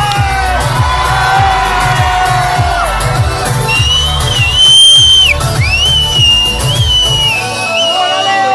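Live pop band playing loud through the PA, heard from within the crowd, with a steady pulsing bass beat. A long, shrill whistle from the audience rides over it from about halfway through, and the beat stops shortly before the end as the crowd begins to cheer.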